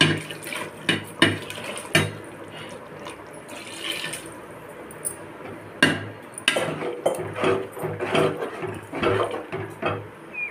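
Water poured into an aluminium pot of mushroom gravy, with several sharp clinks of metal against the pot. In the last few seconds a ladle stirs and scrapes the pot in a quick run of knocks.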